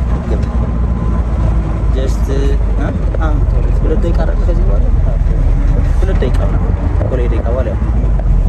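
Steady low engine and road rumble inside a moving vehicle's cabin, with voices talking over it.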